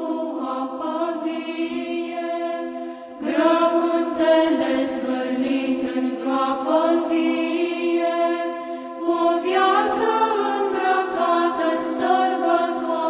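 Orthodox church chant: voices singing long melodic phrases over a steady held drone note. There is a brief dip about three seconds in, then a louder new phrase.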